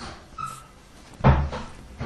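A single sudden dull thump a little over a second in, with a brief faint squeak just before it.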